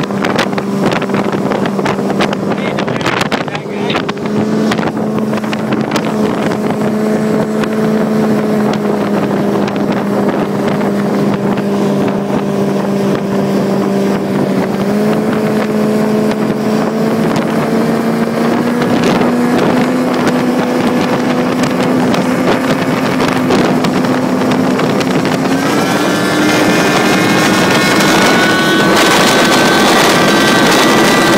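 Supercharged speedboat engine running hard on the water, its pitch stepping up several times as it gains speed. Wind buffets the microphone.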